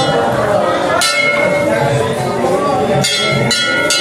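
A temple bell struck about four times, ringing over a hubbub of worshippers' voices.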